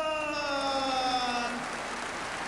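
A ring announcer's long, drawn-out call of a boxer's name, its pitch slowly falling, ending about one and a half seconds in, then the arena crowd applauding.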